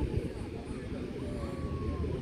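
Background chatter of several people's voices over a low steady rumble.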